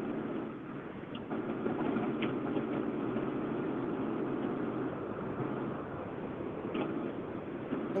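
Steady noise coming in over a telephone line from a dial-in caller's end, cut off sharply above the phone line's range, with a few faint ticks.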